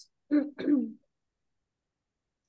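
Two short vocal sounds from a woman's voice, about half a second in, followed by dead silence on the call audio.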